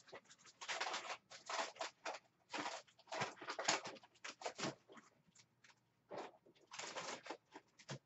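Paper rustling and shuffling in irregular bursts as loose cut-out paper pieces and cardstock scraps are sorted through by hand, in a search for pre-cut sentiments.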